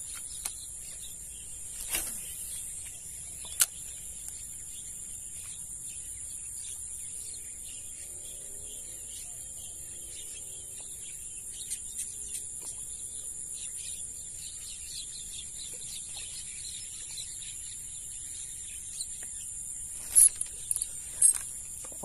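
Steady high-pitched chorus of insects, with a few sharp clicks and knocks scattered through it, the loudest near the end.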